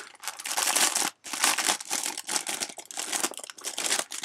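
Clear plastic kit bag crinkling in a run of bursts, with a short break about a second in, as a plastic sprue of model wheel rims is slid out of it.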